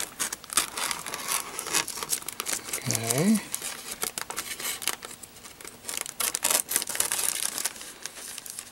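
Scissors cutting thin clear laminating film, the plastic sheet crinkling and crackling in many quick, irregular snips as it is cut and handled.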